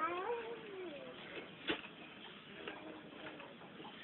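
A short, high wordless vocal call that glides up and then down in the first second, followed by a sharp click about halfway through and a few fainter calls later.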